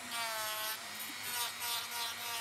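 Dremel 3000 rotary tool on a flexible shaft running at speed six, its 120-grit sanding band held lightly on a resin piece: a steady high motor whine over the rasp of sanding. This finer-grit pass smooths out the scratches left by a 60-grit band.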